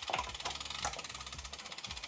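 Faint, rapid, even ticking of a road bike's freehub pawls ratcheting.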